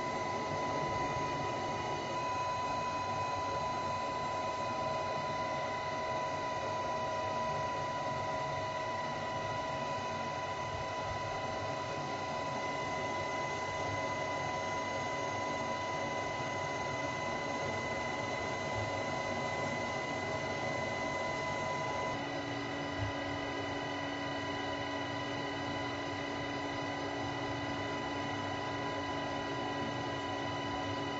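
Steady in-flight noise inside a UH-60 Black Hawk helicopter: a constant rush with several steady whining tones. About two-thirds of the way through, the set of tones changes and a lower tone joins in.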